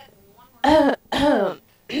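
A person clearing their throat: two short voiced sounds, each falling in pitch, a little over half a second apart, with a third starting at the very end.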